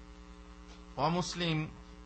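Steady electrical mains hum in the lecture's microphone and amplifier chain, with a man's voice heard briefly for about half a second, a second in.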